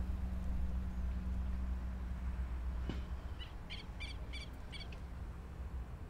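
A bird calling a quick run of about seven short, high chirps midway through, over a steady low background hum.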